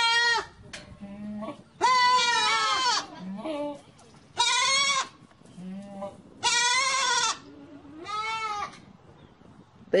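Goats bleating repeatedly: about five loud, quavering bleats spaced a second or two apart, with softer, lower calls in between.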